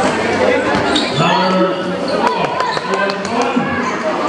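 Basketball game play: a ball bouncing with a few sharp impacts on a concrete court, over voices of players and spectators.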